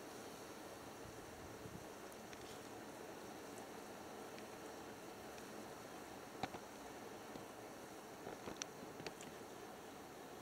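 Small fire of dry split firewood just catching over fire starters, burning with a faint steady hiss and a few sharp crackles: one about six and a half seconds in and a cluster of three or four near the end.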